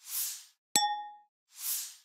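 Animation sound effects: a soft whoosh, then a single bright ding about three quarters of a second in that rings out briefly, then another whoosh near the end.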